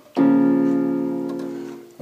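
A B-flat minor chord struck once on a digital keyboard's piano voice a moment in, held and fading away slowly.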